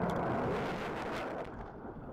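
UP Aerospace solid-fuel sounding rocket's motor burning at liftoff: a loud rushing noise with sharp crackles, fading over the second half as the rocket climbs away.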